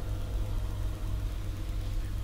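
Low steady hum of background noise, with no voice over it.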